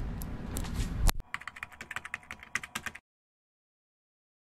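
A low rumble of room noise, then a sharp click about a second in, followed by a rapid run of light, typing-like clicks for about two seconds that cuts off abruptly.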